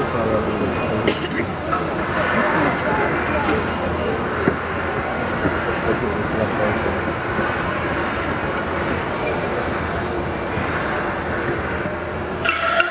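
Crowd chatter: many voices talking at once in a large audience, with no single voice standing out.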